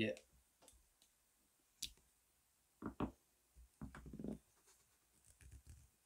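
Faint, scattered clicks and crinkles of vinyl electrical tape being parted from its roll and its loose end pressed down around the back of an XLR plug.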